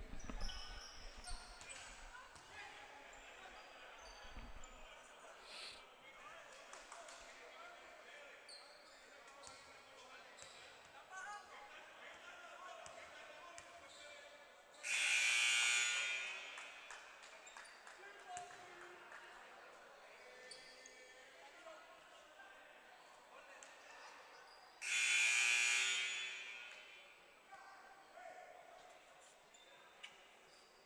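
Gym buzzer sounding twice, about ten seconds apart, each blast lasting over a second. Between the blasts a basketball bounces on the hardwood and voices murmur through a large, echoing hall.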